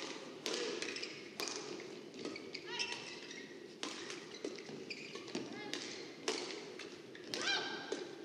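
Badminton court sounds: sharp taps of rackets striking a shuttlecock and short squeaks of shoes on the court floor, spaced a second or more apart, over a steady murmur of the arena.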